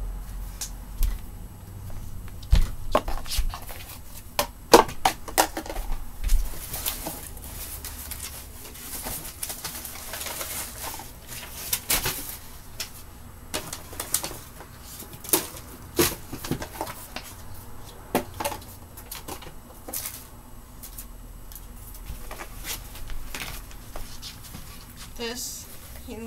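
Household items being handled and put away during room tidying: scattered knocks and clatters at no regular rhythm, with a stretch of rustling about a third of the way in.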